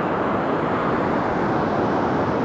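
Steady rush of ocean surf mixed with wind on the microphone.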